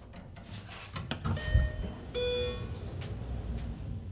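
Elevator's sliding doors closing, with a click about a second in and a two-note electronic chime around the middle, over a low hum.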